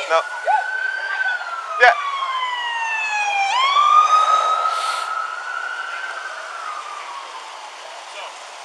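Police siren wailing, its pitch rising and falling slowly, then swooping sharply back up about three and a half seconds in for another long rise and fall that fades toward the end. A sharp click sounds about two seconds in.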